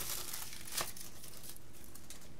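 Thin plastic shrink wrap crinkling as a leftover strip is peeled off the top of a DVD case, with a short crackle a little under a second in.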